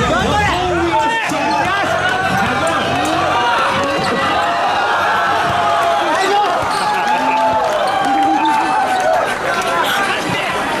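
A basketball bouncing on the court a few times, over many spectators shouting and talking at once.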